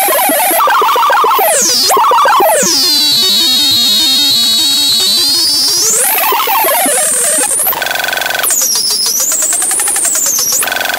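Circuit-bent speech circuit from a VTech 'My First Talking Computer' glitching: high swooping whistles over garbled, robotic voice-like fragments. About seven and a half seconds in it breaks into a rapid, stuttering buzz.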